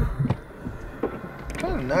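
Many hands tapping and rubbing against a car's windows and body, heard from inside the car: scattered light taps over a low rumble, a patter likened to rain on a tin roof.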